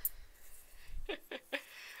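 Quiet handling noise as a wooden embroidery hoop with its fabric is picked up and turned, with a low rumble in the first second, then a few short breathy laughs.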